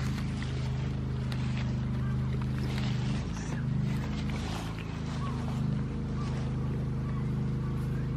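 A steady low engine drone from a motor running at an unchanging speed. Over it come irregular crisp tearing and crunching sounds, most about halfway through, from goats biting off and chewing grass close by.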